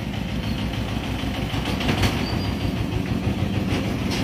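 A steady low rumble from a passing vehicle, with a few faint clicks about halfway through.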